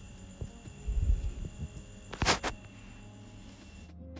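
Fabric rustling as the dress pieces are handled and smoothed flat on the table, with a couple of soft low knocks about a second in and two brief louder rustles just past halfway.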